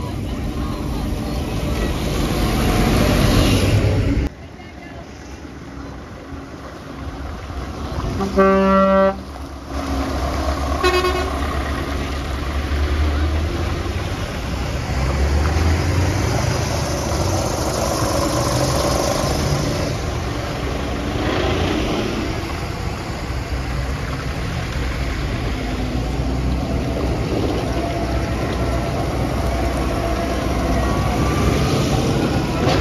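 Diesel tractors and a lorry driving slowly past, engines running, with one loud, long horn blast about eight seconds in and a short toot about two seconds later.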